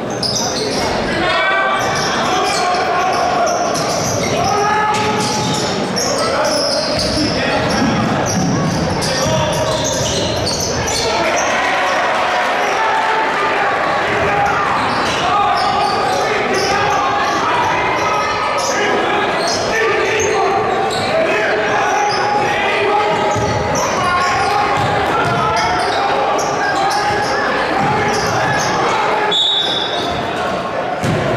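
Basketball game in a large gym: a basketball bouncing on the hardwood court amid the steady chatter and shouts of players and spectators, with the hall's echo.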